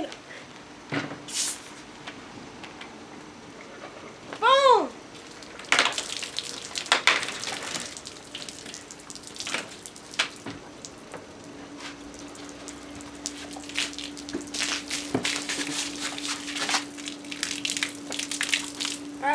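Orange Fanta foaming with Mentos spurts and splashes out of a shaken plastic soda bottle onto a table. The splashing comes in irregular spurts from about six seconds in.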